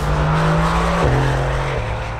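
Mercedes-AMG GT R Speedlegend's twin-turbo V8 running loud under way, its steady note stepping down in pitch twice, about a second in and near the end.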